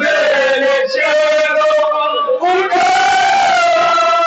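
A group of men loudly chanting a noha, a Shia lament, together, in long held sung lines. The singing breaks briefly about a second in and again just past two seconds.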